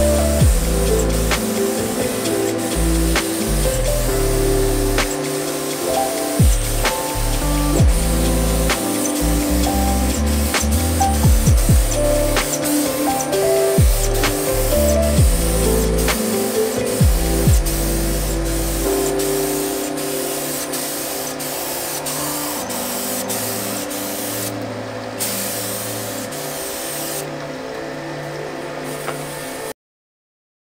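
Air-fed paint spray gun hissing as it lays clear coat on a car body, under background music with a steady beat. The hiss thins out twice near the end, and everything cuts off suddenly at the very end.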